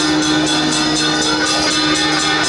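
Taiwanese road-opening drum (開路鼓) ensemble playing loudly: a large barrel drum beaten in a fast, even rhythm, with a big hanging gong ringing steadily beneath it.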